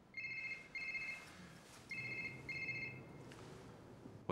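Mobile phone ringing with a classic double-ring tone: two pairs of short rings, the second pair about two seconds in.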